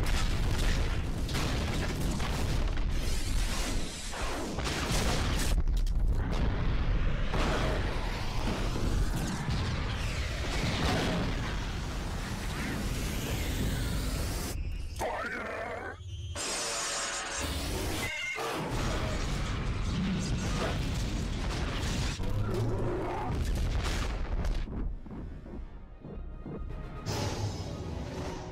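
Space-battle soundtrack: a run of explosions and crashing, shattering blasts with deep booms, set over dramatic background music. The blasts come from torpedoes striking the warship's ion cannon and the cannon blowing up in a surge of energy.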